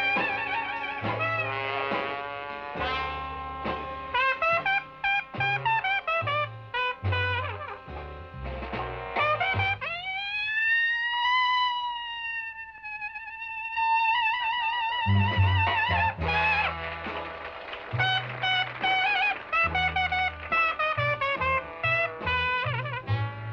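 Dixieland jazz band playing an instrumental passage, trumpet leading over trombone, banjo and bass. About halfway through the band drops out beneath one long, high trumpet note that rises and falls and ends in a wide vibrato, then the full band comes back in.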